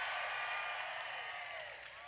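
Rally crowd cheering and applauding, many voices blended together, slowly fading toward the end.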